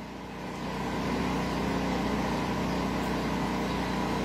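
A steady engine-like motor hum that swells over the first second and then holds at an even level.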